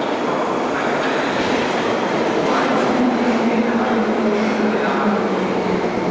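London Underground 1972 Stock deep-tube train running into a platform: steady wheel and running noise, with a motor whine that falls slowly in pitch as the train slows.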